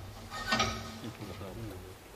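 A brief, indistinct human voice, loudest about half a second in.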